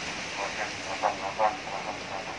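Indistinct voices talking in short bursts over a steady background hiss.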